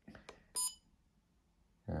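Trail camera's key beep: one short, high electronic tone as a menu button is pressed to scroll the settings, about half a second in.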